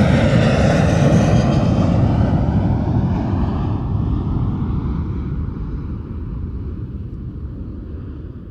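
A jet airplane flying past: a loud engine rumble with a whine whose pitch falls as it passes, then fades steadily away.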